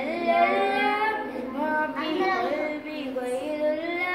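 A boy singing solo without accompaniment, drawing out long, ornamented melodic phrases in the style of an Islamic devotional song (naat or nasheed).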